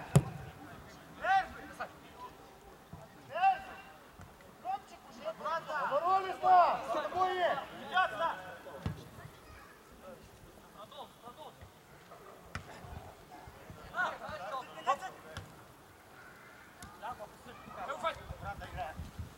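Footballers shouting and calling to each other on an open pitch during play, in short loud bursts that come thickest a few seconds in. A sharp thud of a ball being kicked comes right at the start.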